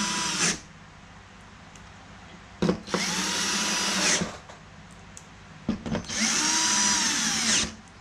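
Cordless drill-driver driving screws into a TV's sheet-metal back panel to fasten the power supply board. It makes three short runs, each spinning up, holding, then winding down: the first ends about half a second in, and the other two start about three and six seconds in, each lasting about a second and a half.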